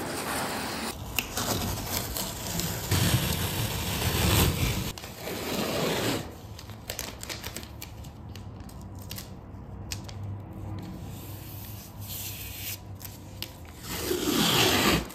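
Blue painter's tape being pulled off its roll and pressed along a wall and baseboard: rubbing, crackling and short peeling rips, louder in the first half.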